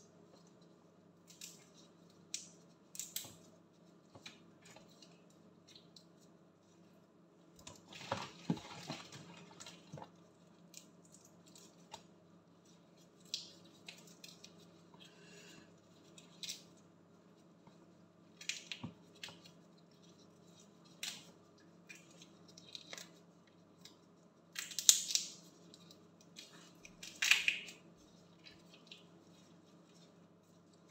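Gloved hands peeling raw shrimp in a plastic basin: scattered small clicks and crackles of shells being pulled off, with a few longer rustling bursts about a third of the way in and again near the end. A faint steady low hum runs underneath.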